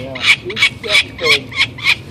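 Peregrine falcon chick calling while being handled, short calls repeated rapidly at about four a second.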